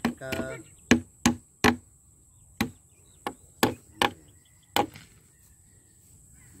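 Eight sharp knocking blows, irregularly spaced from about a third of a second to a second apart. The three in the first two seconds are the loudest.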